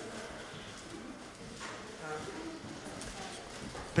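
Faint voices away from the microphone over the hiss of the room, in a pause between amplified speakers.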